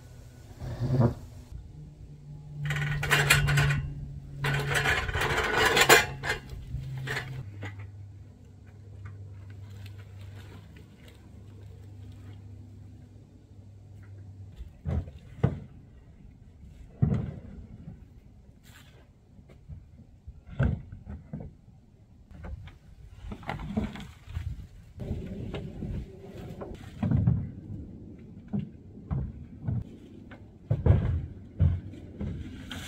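Wooden 2x4 kayak rack scraping and rattling as it is moved on a wheeled dolly, loudest for a few seconds early on. Later comes a string of separate knocks and thumps as plastic kayaks are set onto the rack's wooden arms.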